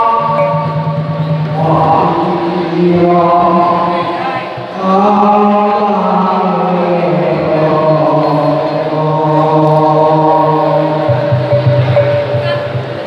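A man chanting into a microphone over a PA, holding long notes of a second or two each and gliding slowly from one pitch to the next, dropping to a lower note near the end.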